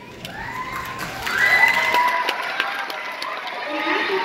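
A group of children cheering and shouting, with long rising shouts that start just after the opening and again about a second in, over scattered clicks.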